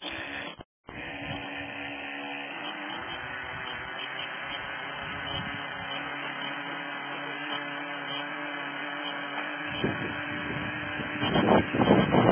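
A steady low hum with a few knocks, then, about eleven seconds in, a small model engine starts and runs loudly and roughly on its first run.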